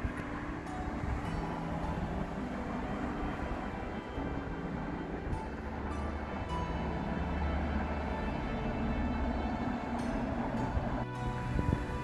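Faint background music over a low, steady outdoor rumble.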